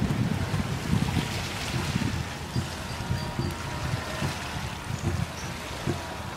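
Wind buffeting the microphone in irregular, low rumbling gusts.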